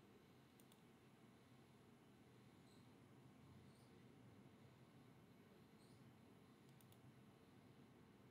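Near silence: faint room hiss with a few quiet computer mouse clicks, a quick pair about half a second in and another pair near the end.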